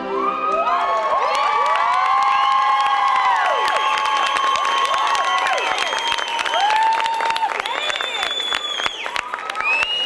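Audience cheering and screaming over applause: many high-pitched voices hold long screams and whoops that rise and fall, with clapping throughout, as a music track stops at the very start.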